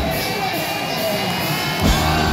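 Live hard rock band in a break: the drums and bass drop out, leaving sustained guitar tones ringing over crowd noise. The full band comes back in just before the end.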